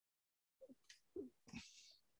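Near silence between phrases of speech, with a few faint, short sounds about half a second, a second and a second and a half in.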